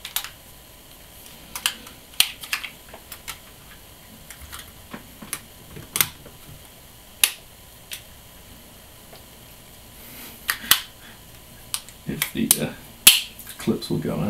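Irregular sharp plastic clicks and taps, with a busier run of clicks and handling noise near the end, as the SJ4000 action camera's front bezel is pressed and snapped onto the plastic camera body by hand.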